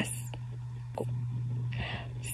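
A pause between sentences: a steady low hum under faint mouth clicks, with a soft breath drawn near the end.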